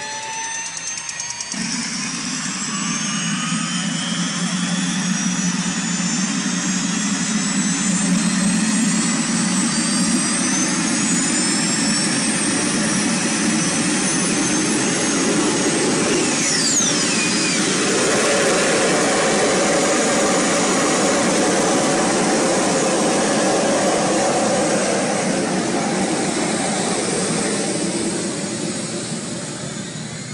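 MTT Turbine Superbike Y2K's Rolls-Royce Allison gas turbine starting up and running, really loud. A whine climbs in pitch over the first ten seconds or so under a steady jet-like roar. About sixteen seconds in, a high whine drops sharply in pitch, and the roar eases off near the end.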